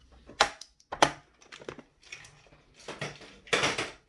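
Hands rummaging among small plastic items in a storage case: sharp clicks about half a second and one second in, then clattering rattles near the end.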